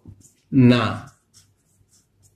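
Marker pen strokes on a whiteboard: a few short, faint scratches while a word is written, with a man saying one word about half a second in.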